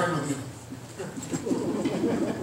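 A man's voice speaking quietly, after a louder phrase ends just at the start.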